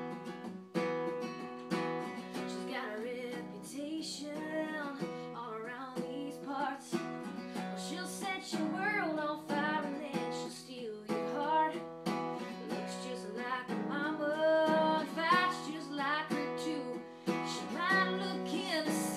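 Acoustic guitar strummed steadily while a woman sings a country song over it, her voice coming in a couple of seconds in.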